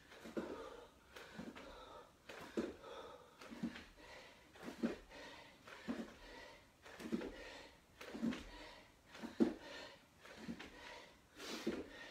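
A man's short, forceful breaths out during push-ups, about one a second.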